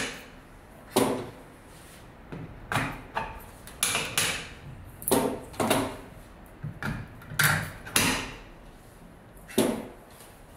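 Aluminium LED grow-light bars being set into the red plastic mounting clips on the light's aluminium housing: about a dozen sharp clicks and knocks at irregular intervals.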